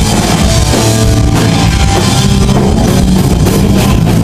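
Punk rock band playing live and loud: distorted electric guitar and bass over a driving drum kit, with cymbal crashes coming thicker in the second half.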